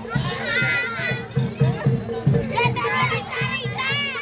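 Barongan procession music with a steady drum beat about three times a second, under children shouting and chattering close by.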